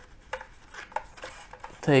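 A few light clicks and taps as a pen is lifted out of a hinged metal tin and the tin is handled, with a word spoken at the very end.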